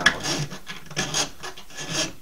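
Half-round steel file rasping across cow bone in a series of quick back-and-forth strokes, working down the bone's spongy material at the hook's bend.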